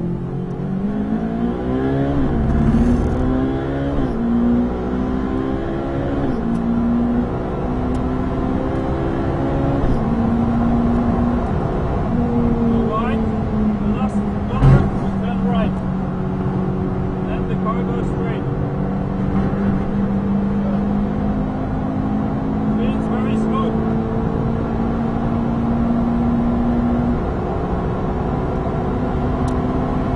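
Ferrari 458 Italia's naturally aspirated V8, heard from inside the cabin, accelerating hard at full throttle. It upshifts several times, the pitch climbing and dropping back at each change, then pulls on at a high, slowly rising pitch. A single loud thump comes about halfway through.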